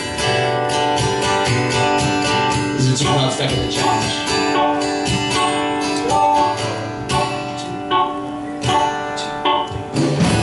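Live band playing an instrumental passage: strummed acoustic guitar and electric guitar over drums.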